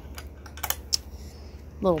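A few light, irregular clicks and taps, bunched in the first second, with a low steady background hum underneath; a woman's voice begins a word near the end.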